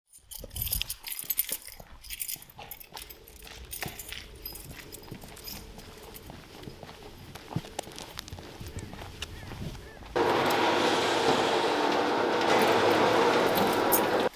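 Scattered metallic clicks and clinks, then a loud steady rushing noise that starts suddenly about ten seconds in and is the loudest sound, running for about four seconds.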